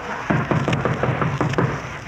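A rapid string of knocks pounding on a door, a radio sound effect from an old broadcast recording.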